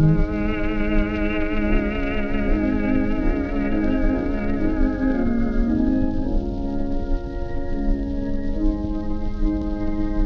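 Playback of a 1927 Pathé Cellodisc 78 rpm record: a slow melody of long notes with a strong, even vibrato, with no clear beat. A steady layer of disc surface noise and crackle sits under the music, and the sound is dull, with no top end.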